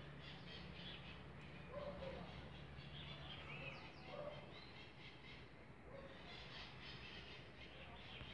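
Faint, scattered bird calls, short chirps, over a low steady background hum.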